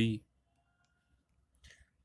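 A man's voice says the single answer letter "B" in Hindi-accented speech, followed by near silence with a faint short hiss shortly before the end.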